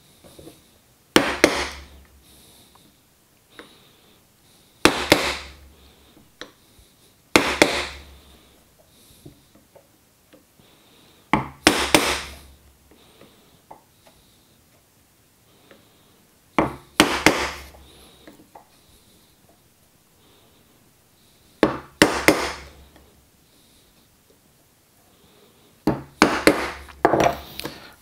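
Wooden mallet tapping a chisel into a walnut board, chopping out dovetail waste along the scribed baseline. Light taps come singly or in pairs every few seconds, with a quicker run of taps near the end.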